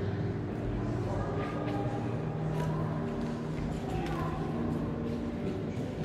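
Background ambience of a large underground stone cistern hall: a distant murmur of voices with steady, sustained low tones held for a few seconds at a time.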